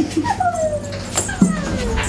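A young child's high-pitched whining calls that slide downward in pitch, with a couple of sharp clicks in the second half.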